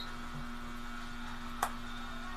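Steady electrical hum at one low pitch, with a single sharp click about one and a half seconds in.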